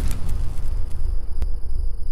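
Deep, steady rumble from a logo intro's sound effect, fading in its higher tones after a whoosh, with a single sharp click about one and a half seconds in.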